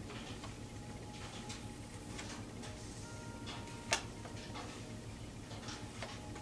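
Tarot cards being handled and dealt onto a cloth-covered table: soft, irregular card flicks and slides, with one sharper click about four seconds in.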